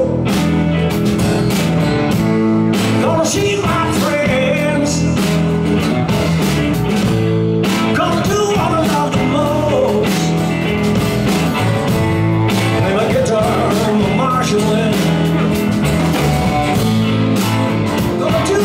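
Live blues-rock band playing: acoustic guitar, electric lead and rhythm guitars, bass guitar and drum kit, with a man singing lead vocals.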